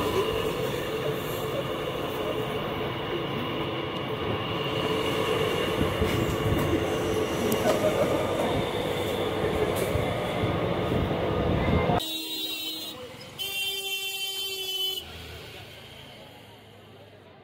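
Mumbai suburban local train heard from inside the carriage by the open door: steady running noise with a held whine. The noise cuts off suddenly about three-quarters of the way through, followed by a few seconds of a thinner sound with a held pitched tone.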